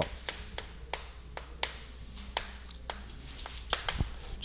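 Chalk on a blackboard while a word is written: about ten light, sharp taps at uneven intervals over a faint low hum.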